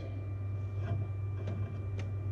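Steady low hum with a faint high whine from a powered-on Flashforge Dreamer 3D printer standing idle. A few faint scuffs come about one and one and a half seconds in, as a grease-laden cotton swab is rubbed along its guide rod.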